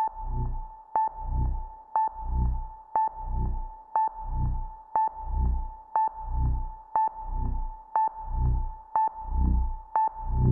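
Electronic countdown sound effect from an Arduino MP3 player module through the machine's built-in speaker: a sharp ping once a second over a steady high tone, each ping followed by a low throb that swells and fades, in step with the countdown.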